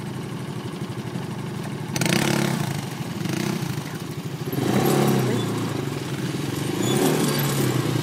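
ATV engine running steadily, then revved up sharply about two seconds in and again around five and seven seconds.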